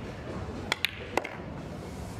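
A pool shot: the cue tip strikes the cue ball, a moment later the cue ball clacks into the 7 ball, and a third, ringing click follows about a third of a second after that, over a low hall murmur.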